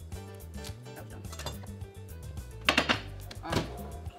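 Background music with a steady beat, with two sharp knocks of kitchen work near the end.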